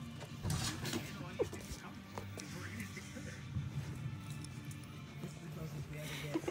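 Scuffling and rustling of a springer spaniel puppy tussling with a plush teddy bear against a hand, with scattered sharp clicks, one louder about a second and a half in, over steady background music.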